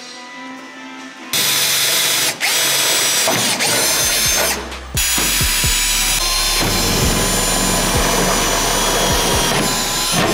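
Milwaukee M12 cordless drill running at high speed in long runs, drilling holes through a widebody fender flare; it stops briefly a couple of times. Background music with a steady beat plays underneath.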